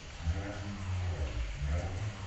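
A motor vehicle engine running and revving over steady rain, with a deep rumble that dips briefly midway and then comes back.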